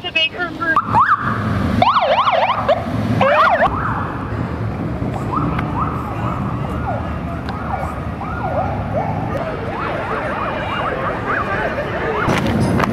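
Police car siren sounding in short bursts: a fast up-and-down yelp loudest about two to three and a half seconds in, then repeated rising whoops about twice a second, over steady background noise.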